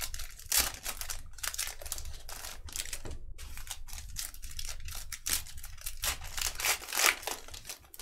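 Foil trading-card pack wrappers being torn open and crinkled by hand: a dense run of irregular crackles, with a brief pause about three seconds in.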